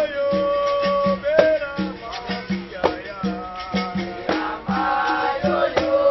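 Capoeira roda music: berimbaus play a repeating twanging rhythm with rattles shaken in time, and a voice sings long held notes over it.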